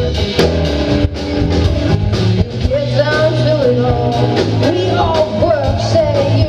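Live rock band playing: two electric guitars, bass and drums, with a woman singing lead, her voice coming in about halfway through.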